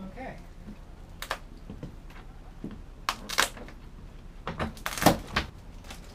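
Irregular wooden knocks and clunks as a rotten plywood bulkhead section is worked loose from a wooden boat's hull, with a cluster of sharper knocks near the end, the loudest about five seconds in.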